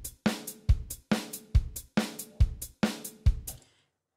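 Sampled drum kit from an SF2 soundfont playing back a basic beat at 140 BPM: bass drum, snare and ride cymbal, one hit per beat with the bass drum on alternate beats, running through the one-bar pattern about twice before stopping shortly before the end.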